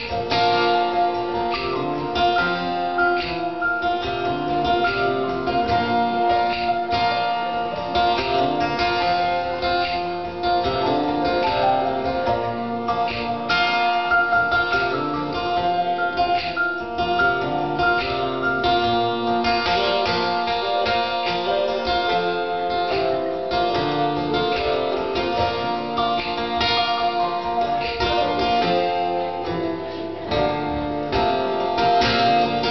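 Acoustic guitar strummed steadily in an instrumental passage of a live song.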